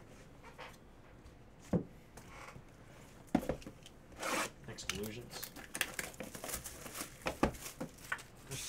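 Trading card pack wrapper crinkling and tearing open, with cards being handled: a single click, then from about three seconds in a run of sharp rustles and clicks.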